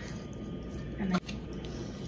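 Soft rustling of potting soil as fingers press it down around a newly potted plant, over quiet room tone, with two spoken words about a second in.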